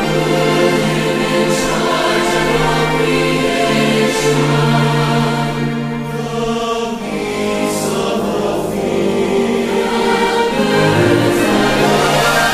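Large choir singing a sacred choral anthem with orchestral accompaniment, in long held notes.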